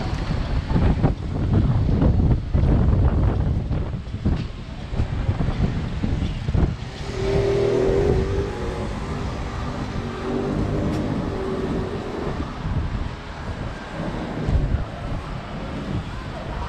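Wind rumbling on the microphone, heaviest in the first half, over the noise of city street traffic.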